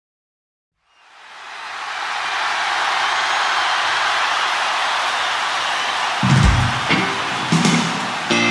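A huge stadium crowd cheering, swelling up from silence and holding at a steady roar. Near the end a low thump is heard, then the first few piano notes.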